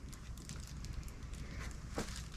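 Quiet room tone with a few faint ticks, one a little louder near the end. The battery-operated plush chicken toy, pressed to start it, stays silent because its batteries have been taken out.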